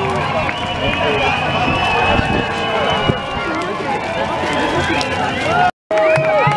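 Crowd of many overlapping voices shouting and calling out together, with the sound cutting out briefly just before the end.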